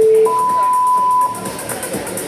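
Competition timer beeping over the gym's sound system: a low beep ending just after the start, then a higher, longer beep lasting about a second. It signals the start of a climbing period.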